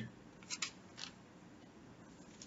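Faint room tone with a few short, soft ticks of small handling noise: a close pair about half a second in and one more at about a second.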